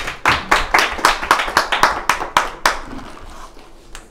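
A small audience clapping at the close of a talk: many sharp hand claps at once, thinning out and dying away after about three seconds.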